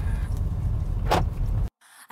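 Car engine running with a steady low rumble and a short swish about a second in; the sound cuts off abruptly near the end.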